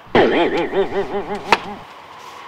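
A man's voice making a quick run of short rising-and-falling vocal sounds, about seven a second, like a burst of laughter or an exasperated vocal outburst. About one and a half seconds in there is a single sharp knock.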